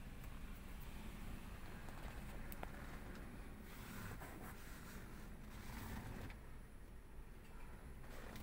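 Quiet car-cabin background: a faint, steady low hum with a single small click about two and a half seconds in.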